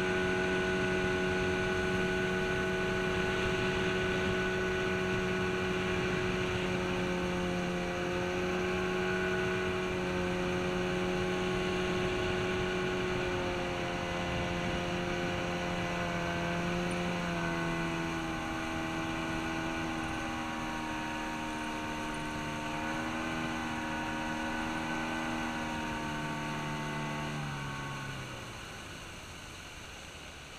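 Suzuki 40 hp outboard motor running steadily at cruising speed, pushing a jon boat along, with a steady hum and water noise under it. Its pitch shifts slightly about halfway through. About two seconds before the end the motor is throttled back: the pitch falls and the sound drops away.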